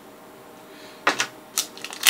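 Plastic packaging being handled. After a second of quiet, there are a few sharp crinkles and crackles: one about a second in, another a half second later, and more near the end.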